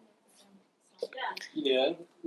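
Speech only: a quiet pause, then a person speaking softly in the second half.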